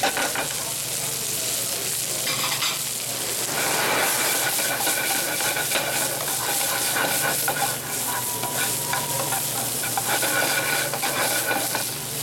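Fish fillets, carrots, garlic and herbs sizzling steadily in hot grapeseed oil in a sauté pan, with metal tongs clicking and scraping against the pan as the food is turned.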